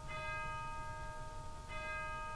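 A bell struck twice, once at the start and again about a second and a half later, each stroke ringing on with several clear tones.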